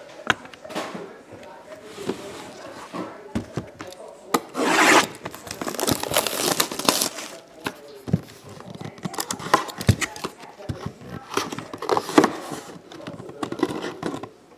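A sealed cardboard trading-card box being handled: cardboard rubbing and tapping, with crinkling and tearing of its wrapper in bursts, the biggest about five seconds in and again around six to seven seconds.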